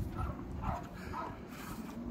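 A dog whimpering: three short, high whines about half a second apart.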